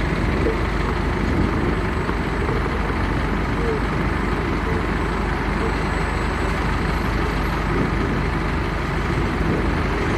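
Steady low rumble of slow, queuing city traffic, led by the engine of a double-decker bus just ahead.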